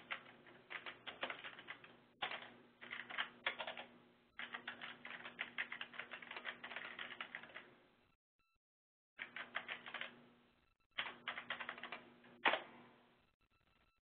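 Typing on a computer keyboard: quick runs of keystrokes in bursts, with a pause of about a second near the middle and one louder key strike near the end.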